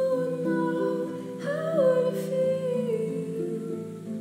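Concert pedal harp playing slow plucked chords, with a woman's voice carrying a slow, wordless melody over them.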